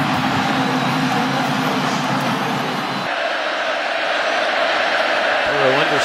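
Stadium crowd cheering after a touchdown, then an abrupt switch about three seconds in to a thinner, steadier crowd noise.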